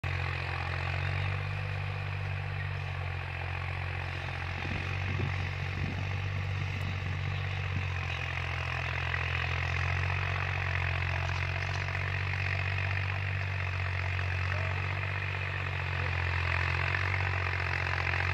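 Tractor engine running steadily under load as it pulls and drives a 10-foot Sonalika rotavator tilling a stubble field, a constant low drone with a grinding, noisy wash above it.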